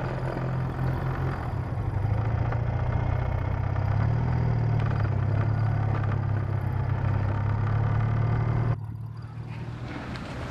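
BMW motorcycle engine running steadily while riding, a low drone whose pitch rises a little about four seconds in. Near the end the sound drops suddenly to a quieter level.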